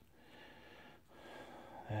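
Two soft breaths close to the microphone, one after the other, each about a second long.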